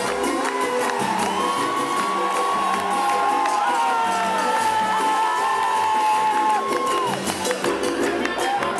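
Live band music with a steady percussion beat, and a crowd cheering over it, with long held high notes through the middle.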